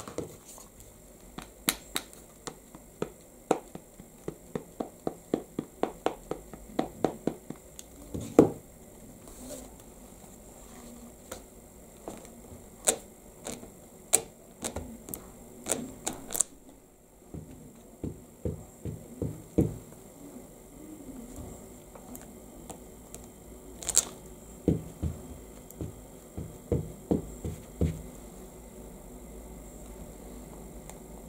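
An ink pad dabbed over and over onto a clear rubber stamp on an acrylic block, about four quick taps a second for several seconds. After that come scattered knocks and taps as the stamp block is pressed onto the card and lifted again.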